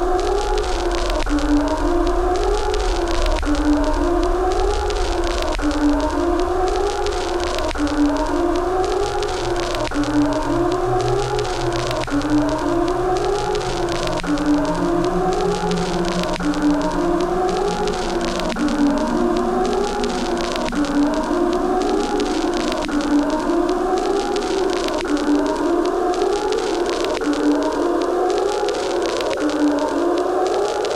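A looping eerie Halloween sound effect: a wailing tone that rises and falls like a slow siren, repeating about every two seconds, over a low steady hum.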